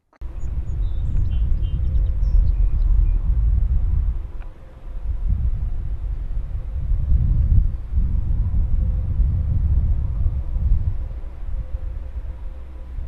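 Wind buffeting the microphone: a loud, low rumble that swells and fades in gusts, easing off briefly about four and a half seconds in.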